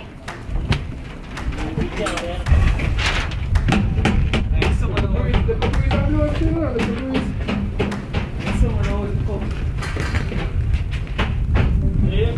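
A person's voice, too indistinct to make out words, over a steady low rumble and scattered clicks.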